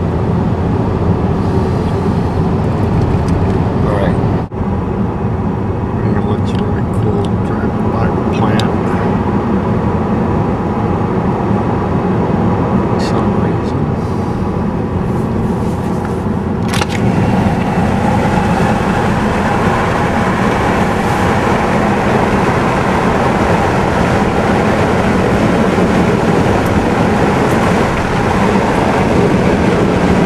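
Steady engine and tyre road noise of a car cruising along a highway, heard from inside the cabin, with a brief dip about four and a half seconds in and a sharp click about seventeen seconds in.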